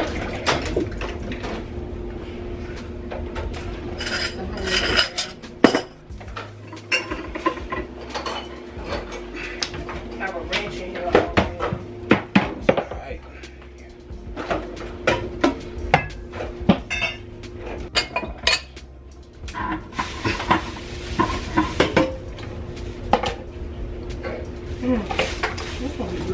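Kitchen clatter of groceries being handled and unpacked: irregular knocks, rustles and clinks of packages, containers and dishes on the counter, over a steady low hum.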